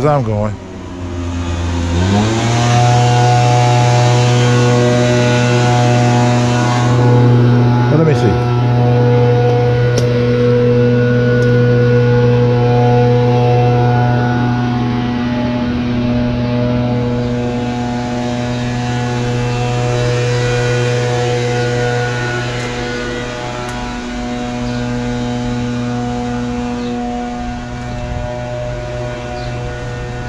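Small petrol engine of a yard tool running loudly at a steady high speed. Its revs drop at the start and climb back up about two seconds in.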